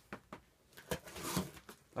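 Hands working at a taped cardboard parcel to open it: a few light clicks, then a rustling scrape of tape and cardboard about a second in.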